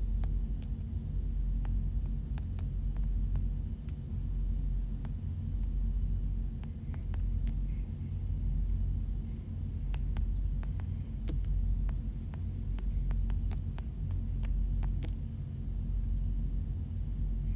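Low steady rumble that swells and eases about every two seconds, with faint quick taps from typing on a phone's touchscreen keyboard, coming thickest in the last third.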